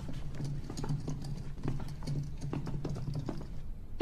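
A quiet run of light, irregular taps and clicks over a low steady hum.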